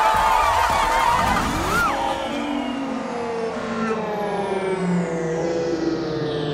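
Brass marching band playing. Over the first couple of seconds a crowd is cheering and whooping, and about two seconds in this gives way to long held brass notes.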